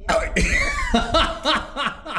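A person's voice: a loud vocal outburst, then a run of short, evenly spaced vocal bursts, about three a second.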